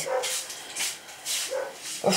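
Young dog whimpering briefly twice in pain while his infected castration wound is being cleaned, with short hissing sounds in between.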